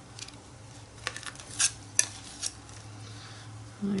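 Metal palette knife scraping and clicking against a paint jar while scooping out red paint and dabbing it on a palette: a handful of short scrapes and clicks, the sharpest about two seconds in.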